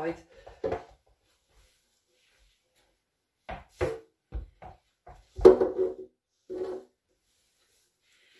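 A few sharp knocks from a small ball bouncing on the floor and being struck with a plastic toy cricket bat, the loudest a little past halfway through.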